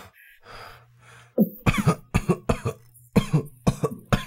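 A person coughing in a fit of short, harsh coughs in quick succession, starting about a second and a half in.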